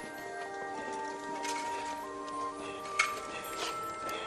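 Film score music: sustained notes climbing step by step, then holding, with a few soft clicks.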